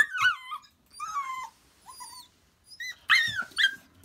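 Laika puppy whining: a run of short, high whines that slide down in pitch, several coming close together near the end. It is whining because it wants to climb up onto the bed where the cat is.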